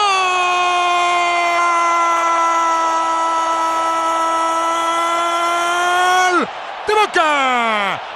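A football commentator's drawn-out 'gol' cry, one long note held for about six seconds, marking a goal. Six seconds or so in, the note breaks off with a falling pitch, and a few quick shouted words follow.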